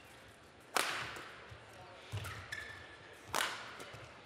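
Badminton rally: two sharp racket strikes on the shuttlecock, the first about a second in and the second near the end, with the squeak of court shoes on the mat between them.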